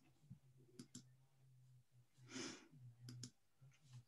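Near silence with a few faint, short clicks, like a computer mouse being clicked to start a screen share, and a soft breath about halfway through over a faint steady hum.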